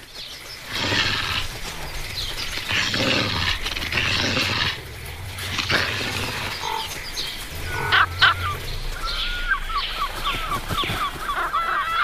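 Wolves growling and snarling over a carcass, in harsh noisy bursts through the first half. From about two-thirds of the way in, a bird calls in a quick series of short pitched notes.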